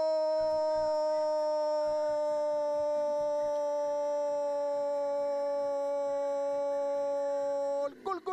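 A commentator's long, held goal call: one unbroken shouted 'Goooo…' at a steady pitch that sags slightly. It breaks off just before the end, at the point where the rapid repeated 'Goal!' shouts begin.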